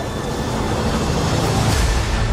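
Movie-trailer sound design: a dense, deep rumble that swells slightly, with a rising whoosh near the end.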